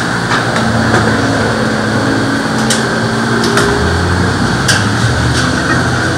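Steady, loud room din with a few sharp clinks about a second or two apart, like glassware being handled behind a bar.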